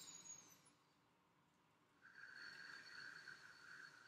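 A faint, slow deep breath: an inhale that ends about half a second in, a pause, then a long, steady exhale starting about two seconds in.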